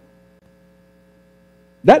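Faint, steady electrical hum made of several thin steady tones, heard in a gap in speech. A man's voice cuts in near the end.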